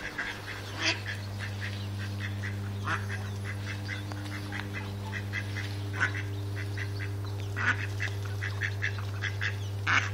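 Mallard ducks quacking in quick runs of short, repeated calls, with a few louder calls scattered through.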